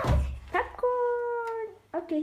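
A child's drawn-out vocal sound, one held note lasting about a second and dipping slightly at the end, after a short knock and a click from handling the microwave.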